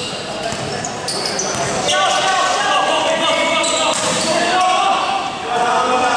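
Basketball game on an indoor court: the ball bouncing on the floor and sneakers squeaking, under voices calling out. The voices grow louder from about two seconds in, and everything echoes in a large gym hall.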